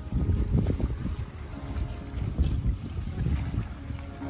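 Wind buffeting the microphone in uneven gusts, a low rumble, over the wash of a boat moving across open water.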